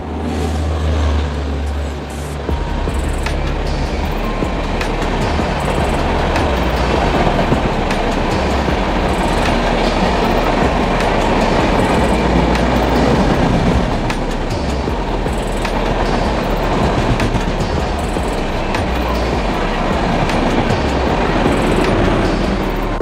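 Indian Railways 12903 Golden Temple Mail express passing close by along a station platform, locomotive first and then its coaches, with a loud, steady rush of wheels on rail. There is a deep hum in the first couple of seconds as the locomotive goes by.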